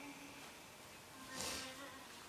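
A short sniffle into a tissue about one and a half seconds in, from someone crying, over faint music playing quietly.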